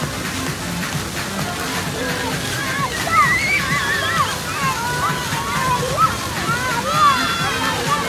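Fountain water jets splashing steadily, with many high-pitched voices calling out over it and music playing.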